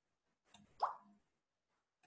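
A single short plop that rises quickly in pitch, about a second in, against near silence.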